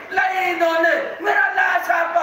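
Mourners' drawn-out, high-pitched wailing cries of lament, several held notes rising and falling, the weeping of a majlis audience at the recital of Karbala martyrdom.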